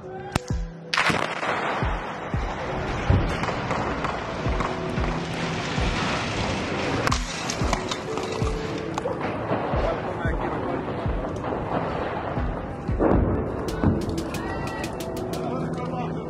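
A house being blown up by an explosive charge: a sudden blast about a second in, followed by a long spell of noise, under background music with a steady beat.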